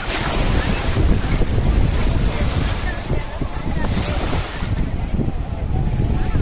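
Sea surf washing in over shallow water onto a sandy beach, with strong wind rumbling on the microphone. The hiss of the water eases about two-thirds of the way through.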